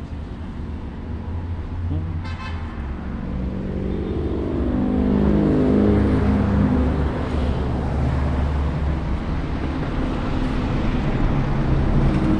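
Street traffic: a steady low rumble of motor vehicles, with one engine growing louder and shifting in pitch as it passes, loudest about six seconds in.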